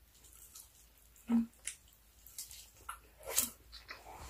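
Close-up chewing of a bite of braised pork belly: wet, irregular smacking and squishing mouth sounds, with two louder bursts, one about a second and a half in and one near three and a half seconds.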